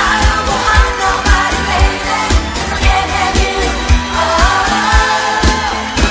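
Pop song with a woman singing the lead into a microphone over a steady beat of about two bass-drum hits a second.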